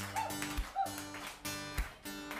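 A live band playing an instrumental passage with no singing: acoustic guitar strumming over bass and electric guitar, with a low thud of a beat about once a second.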